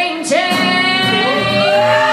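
A woman singing live with acoustic guitar accompaniment: a few short sung syllables, then a long held note near the end.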